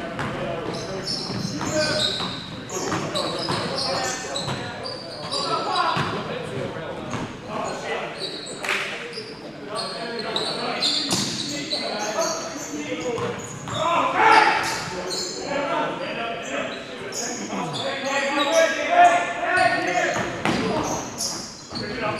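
Indoor basketball game: a basketball bouncing on the hardwood gym floor amid indistinct voices of players and spectators, echoing in the large hall.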